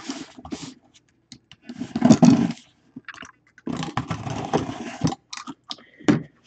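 Cardboard box being opened and handled: scraping and rustling of cardboard in several bursts, the longest around two seconds in and from about four to five seconds in.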